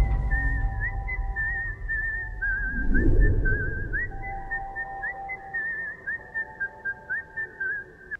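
Whistled melody in a film background score: a single high, wavering line with trills and quick upward flicks, turning into short separate notes near the end, over soft held music tones. A low rumble underneath fades away over the first few seconds.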